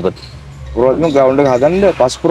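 Speech: a man talking, starting after a pause of under a second.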